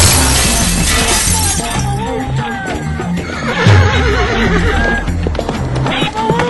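Dramatic intro music with a loud crash at the start, overlaid with a horse whinnying sound effect a few seconds in.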